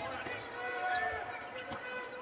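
Basketball game sound in an arena: a low crowd murmur, with faint dribbles of the ball on the hardwood and a few short squeaks.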